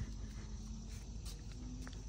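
Quiet outdoor background with a faint steady hum and two or three faint short clicks from handling the trike's brake lever.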